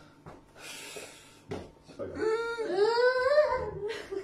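A high, wavering whine from a voice, lasting about a second and a half and rising then falling in pitch, starting about halfway through. It is preceded by a brief hiss and a click.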